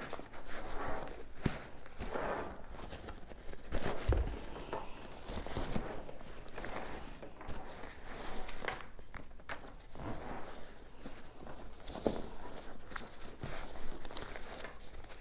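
A packed nylon travel backpack being handled and zipped shut: the fabric rustles and scrapes in uneven swells, with zipper pulls and small knocks as the contents are pressed down.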